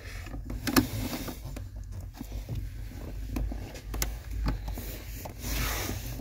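Scattered rubbing, scraping and a few light clicks of plastic parts being handled: a brake light switch being pushed by hand into its mount on the brake pedal bracket without going in, over a low steady rumble.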